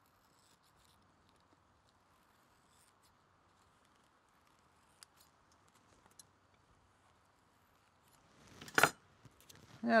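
Small metal scissors snipping faintly at the quill end of a turkey feather, with a couple of sharper clicks about halfway through. Near the end, one loud clack.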